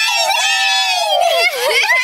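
Several young girls screaming together in excitement, with overlapping high-pitched voices held for over a second before they break up.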